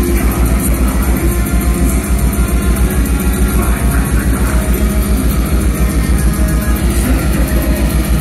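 Black metal band playing loud live: heavily distorted guitars over drums with a rapid, even kick-drum pulse.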